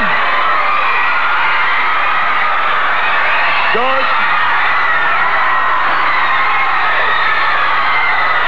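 Arena crowd cheering and shouting, a steady dense mass of voices, with one short shout about four seconds in.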